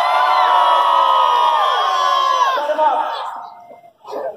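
A large audience in grandstands cheering and shouting together in a long held yell that dies away about three seconds in.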